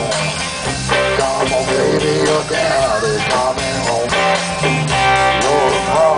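Live rock band playing electric guitars and drums, amplified through a stage PA.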